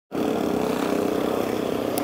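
Steady road-traffic noise: motor vehicles running past with a continuous low engine hum.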